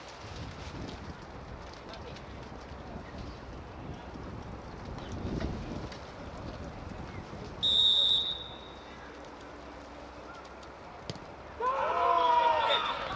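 A referee's whistle blown once, a short single-pitched blast about eight seconds in, signalling that the penalty kick may be taken. Near the end comes a short knock as the ball is struck, then voices shouting, over a low outdoor rumble.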